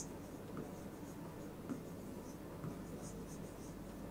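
Faint scratching and light taps of a pen writing words on an interactive whiteboard screen.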